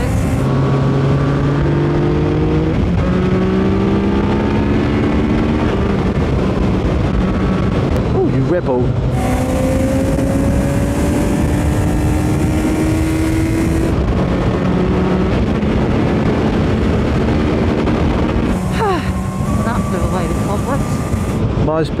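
Sport motorcycle engine running under acceleration on the road, its pitch climbing slowly in each gear and stepping back down at the gear changes, over steady wind and road noise.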